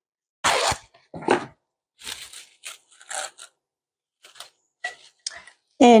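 A sheet of plastic cling wrap pulled from its box and torn off against the cutter edge, a loud rip about half a second in, then light crinkling as the wrap is pressed down over a bowl.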